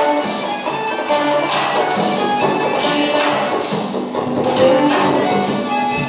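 Early 19th-century Rémy Bassot hurdy-gurdy playing a melody over steady held drone notes, accompanied by electric guitar, with sharp rhythmic strokes through the music.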